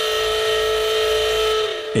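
Mock emergency alert system alarm: a loud electronic tone held at one steady pitch, stopping just before the end.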